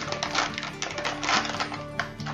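Plastic MRE ration packaging crinkling and rustling as it is handled, a quick run of crackly clicks, over background music.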